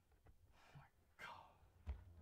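Near silence with two faint, breathy whispers from a person, then a short low knock near the end as the recording device is moved.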